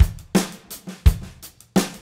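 Drum kit playing a beat in a song's instrumental intro: bass drum, snare and cymbal hits, no singing.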